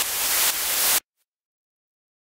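A loud white-noise swell closing the intro music, rising for about a second and then cutting off abruptly into dead silence.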